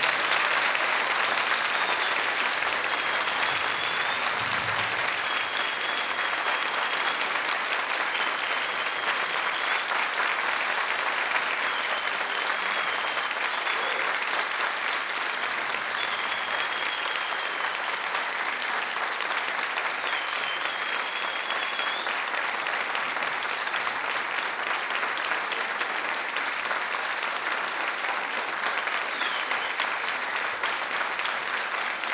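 Audience applauding steadily, with a few brief high tones riding over the clapping.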